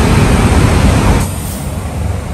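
Loud road traffic noise from a busy highway that drops off suddenly a little over a second in, leaving a quieter traffic hum.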